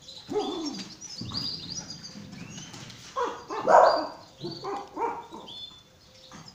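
Small dogs playing, giving a few short yaps and whines, the loudest about four seconds in; birds chirp in the background.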